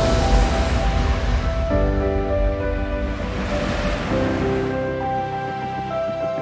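Background music of held chords, entering under a couple of seconds in and changing chord near the end, over the wash of sea water at the shore with a low rumble that fades over the first half.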